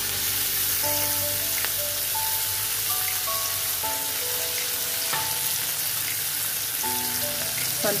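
Fresh fenugreek leaves sizzling steadily as they fry in a pressure cooker pan on the stove. A simple background melody of short notes plays over it.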